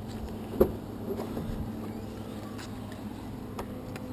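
A car's rear hatch being unlatched and lifted: one sharp click about half a second in, then a few light knocks, over a faint steady hum.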